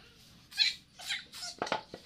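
Short breathy vocal sounds from a child, then a few quick light knocks of wood as small hands grab the boards of a wooden pen near the end.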